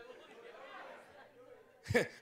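Congregation murmuring and chuckling, a low mix of many voices; a man's voice starts again near the end.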